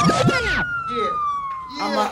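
Siren sound effect in a hip hop backing track, heard while the beat drops out. One tone rises, then falls slowly, with a few quick falling sweeps near the start.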